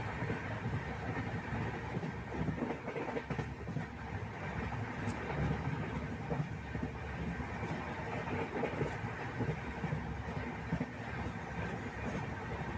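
Passenger train running, heard from inside a coach by an open window: a steady rumble of wheels on the track.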